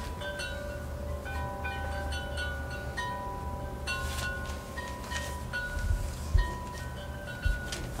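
Wind chimes ringing: several clear metal tones at different pitches sound one after another, each ringing on for a second or so. A low rumble runs underneath, with a couple of soft thumps near the end.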